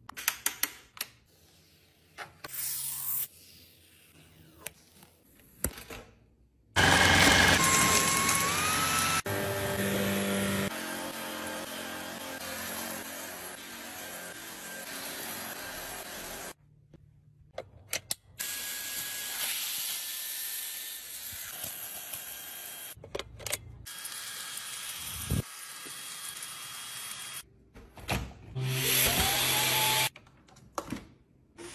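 Shark cordless stick vacuum, its motor spinning up with a rising whine and then running with a steady rush of suction; it cuts out and starts again a few times, with short clicks of its controls before it first starts.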